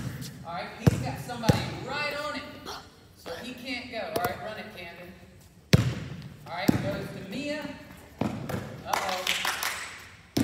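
A basketball bouncing on a hardwood gym floor: several separate thuds, the loudest a little past halfway, between bits of talking.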